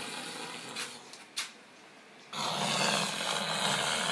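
A person snoring while asleep: one snore through about the first second, then a louder snore starting a little past two seconds in.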